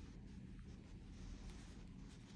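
Near silence: faint room tone with a small tick about half a second in.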